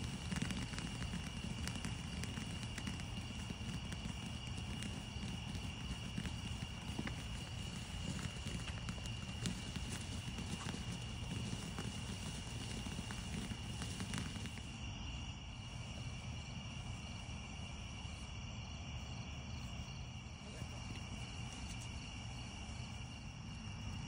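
Ground fountain firework hissing and crackling as it sprays sparks, the crackles thick for about the first fourteen seconds and sparser after. Insects trill steadily underneath.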